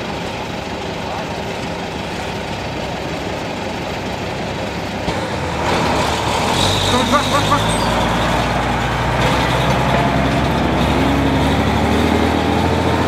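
Engine of a heavy armoured vehicle running as it drives along the road, growing louder about halfway through.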